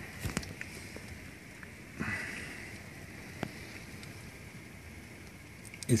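Steady rain falling, a faint even hiss, with a few light sharp taps, one about two seconds in and another about three and a half seconds in.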